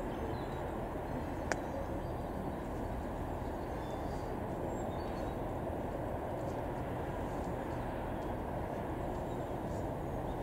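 Steady low rumble of a distant approaching train, with one sharp click about one and a half seconds in.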